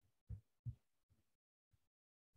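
Faint, dull computer mouse clicks on a desk: four short low thumps in under two seconds, the loudest two close together near the start, with near silence between.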